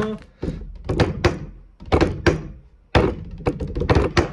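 A series of dull thunks and knocks: a few spaced beats, then a quick run of taps about three seconds in.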